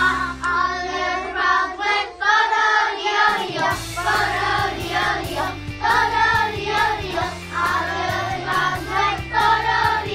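A group of young children singing an action song together over instrumental accompaniment. The low accompaniment drops out for about two seconds near the start, then comes back under the singing.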